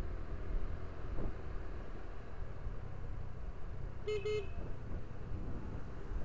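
Steady low rumble of a vehicle riding along a street, with a single short horn toot about four seconds in.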